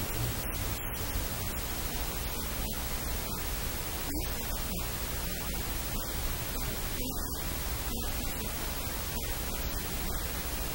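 Steady static hiss covering the whole recording at an even level, with no distinct sound over it.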